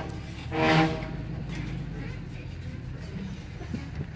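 A vehicle's engine running with a steady low rumble as it pulls over. A short, loud pitched cry sounds about half a second in.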